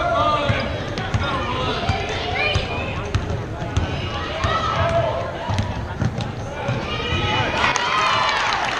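Basketball being dribbled on a hardwood gym floor, with repeated irregular bounces, amid the shouting voices of young players and spectators in the gym.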